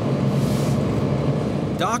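Sheriff's patrol boat engine idling with a steady low hum over a hiss. A man's narration comes in at the very end.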